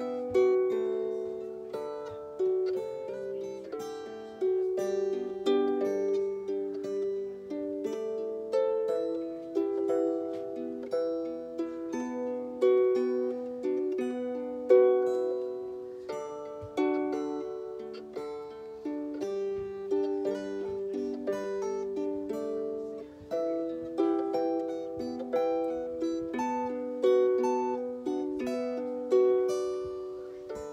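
Harp plucked in a continuous run of melody notes and chords, with an acoustic guitar playing along.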